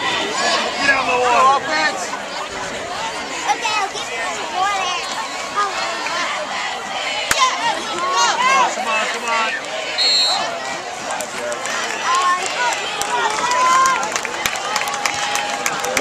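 Crowd of spectators at a football game, many voices talking and shouting over one another.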